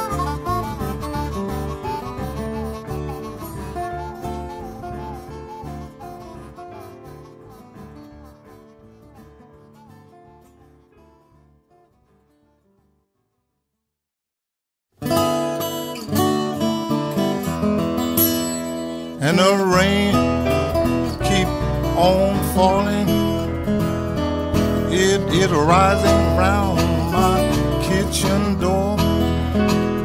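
Acoustic blues music: one song fades out over about twelve seconds into a couple of seconds of silence, then the next track starts with acoustic guitar picking. Bending harmonica notes join about four seconds later, along with a fuller low end.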